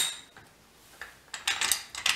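Steel gears and parts of an opened lawn mower transaxle clinking as they are turned and shifted by hand. A sharp click comes at the start, then a few faint clicks, then a quick run of metallic clicks in the second half.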